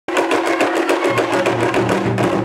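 Live Awa Odori festival music: drums struck in a quick, steady beat over shamisen. A lower sustained note joins about a second in.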